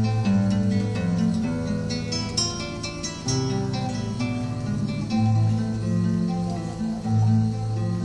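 Acoustic guitar played alone in an instrumental passage, with picked melody notes over ringing bass notes.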